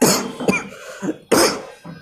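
A man coughing three times, short noisy bursts with the first and last the strongest.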